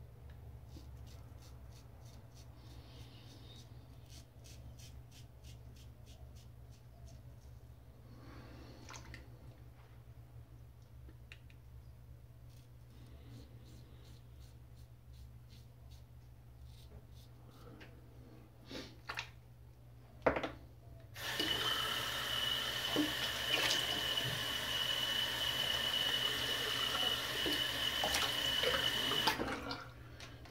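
Safety razor scraping faintly through lathered stubble in short repeated strokes, then a tap turned on full and running into the sink for about eight seconds, shut off just before the end.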